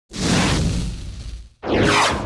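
Two loud whoosh sound effects of an animated logo intro, with deep low energy under them: the first swells and fades over about a second and a half, and the second starts near the end with a falling sweep.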